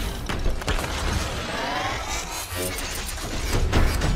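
Cinematic logo-reveal sound design: dense metallic clanking and mechanical clatter over a deep rumble, with rising sweeps in the middle and a heavy hit near the end.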